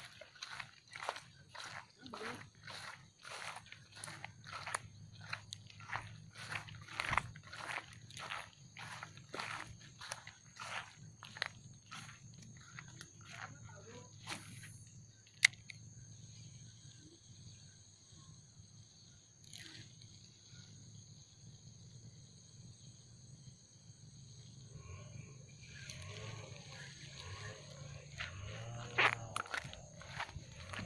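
Footsteps through grass and dry leaf litter, about two steps a second, for the first half, then they stop. A single sharp click about halfway through.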